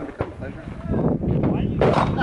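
A handgun fired, a sharp crack with a short ring-out near the end, and a fainter crack just after the start.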